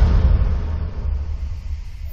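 Cinematic title-sequence sound effect: a deep rumble that slowly fades away.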